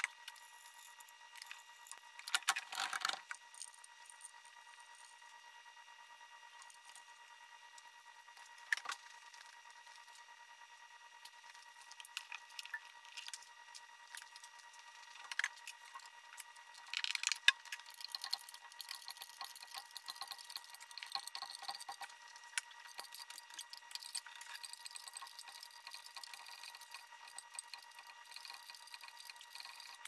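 Faint metallic clinks, clicks and rattles of tools and fittings being handled while a diesel particulate filter is fitted into an engine bay. The clicks are scattered, with a cluster a few seconds in and busier ticking through the second half, over a faint steady high hum.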